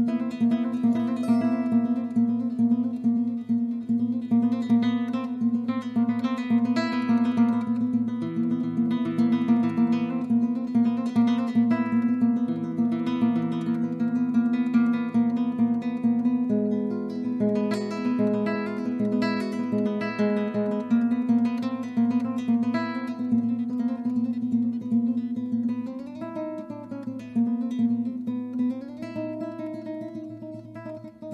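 Soundtrack music on plucked strings, guitar-like, with fast repeated strummed notes over a steady bass note. It gets somewhat quieter near the end.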